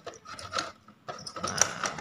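Hard plastic 1/10 RC truck body being pressed down onto an MN86KS chassis: a few sharp plastic clicks and rattles as the rear of the body seats into place.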